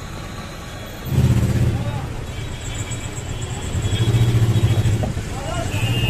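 Motor vehicle engines running close by, a low hum that comes up loudly about a second in and swells again around four seconds.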